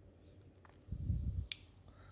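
Handling noise as a glued part is pressed onto a plastic phone case on a table and let go: a low muffled bump lasting about half a second, ending in one sharp click.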